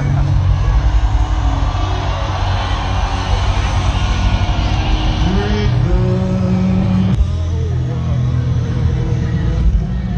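Festival ground ambience: music from the stage heard muddily under a heavy, uneven low rumble, with crowd voices and a short vocal line about halfway through.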